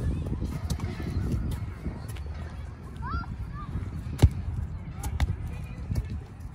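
Soccer ball on a Star Kick solo trainer's cord being kicked: a sharp thud right at the start, the loudest one about four seconds in, and another a second later, over a steady low rumble.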